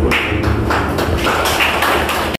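A small group of people clapping together in a steady rhythm, about three claps a second.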